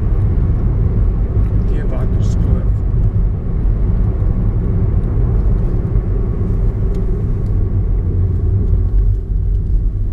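Steady car road and engine noise heard from inside the cabin while driving, a constant low rumble.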